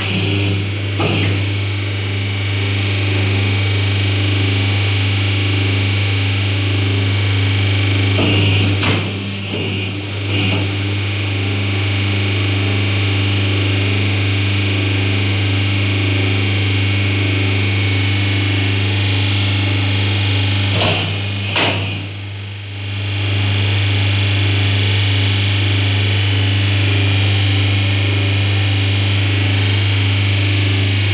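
Paper plate making machine running with a steady low electric hum, broken by a few brief knocks and clacks as the dies are worked and the silver foil plates are handled, near the start, twice around nine to ten seconds in and twice around twenty-one seconds in.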